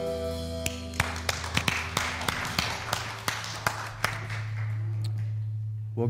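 A worship band's final chord on acoustic guitar and band rings and stops about a second in, followed by a few seconds of light, scattered clapping from a small congregation. A steady low hum runs under the second half.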